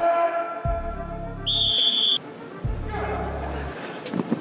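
A single sharp whistle blast, under a second long, about one and a half seconds in, the start signal for a group sprint. Background music with a heavy bass plays underneath.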